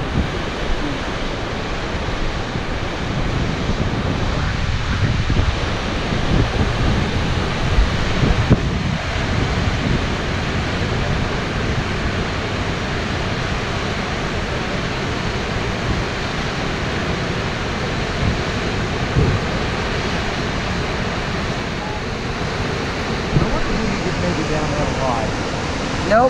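Steady rush of a large waterfall, with wind buffeting the microphone in irregular low gusts.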